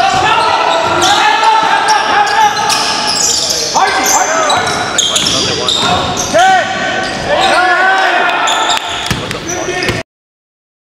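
Game sound from an indoor basketball court: a basketball bouncing on the hardwood floor, short sneaker squeaks and players calling out, echoing in a large gym.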